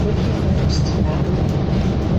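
Interior ride noise of a 2019 New Flyer Xcelsior XD40 diesel city bus under way: a steady low rumble of the engine and drivetrain mixed with road noise.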